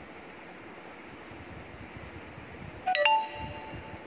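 A short metallic chime-like ring about three seconds in: two quick strikes sounding several clear tones at once, dying away within half a second, over faint room noise.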